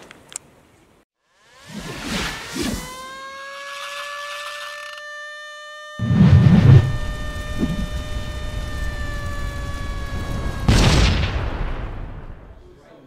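Sound effects for an animated logo intro: a couple of whooshes, then a long held tone, with a deep boom about six seconds in whose low sound carries on underneath, and a final whoosh and hit near the end.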